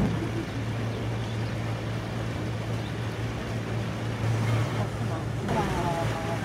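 Steady low drone of a boat's engine over rushing water and wash noise, with a brief high wavering sound near the end.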